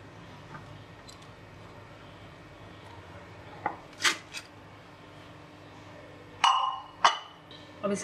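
A glass baking bowl clinks sharply against a ceramic plate a couple of times about halfway through, then clatters louder with a brief ring near the end as the bowl is turned over to release a microwave-baked sponge cake onto the plate.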